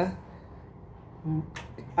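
A pause in a man's talk: a brief low hum, then a single sharp click just before he speaks again.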